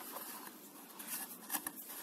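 Faint rustling and light scraping of a clear plastic packaging insert being lifted out of a cardboard box, with a couple of soft clicks about one and a half seconds in.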